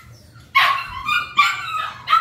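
Puppies yipping: two high-pitched yips, the first about half a second in, the second about a second later.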